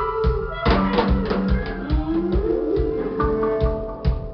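Live band playing an instrumental passage of a song: a drum kit keeps a steady beat under held guitar notes, with one rising glide about halfway through.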